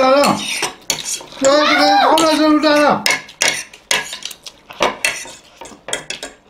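Metal forks clinking and scraping against plates as people eat noodles. A person's voice makes a long, drawn-out sound at the very start and again from about one and a half to three seconds in; the rest is short fork clicks.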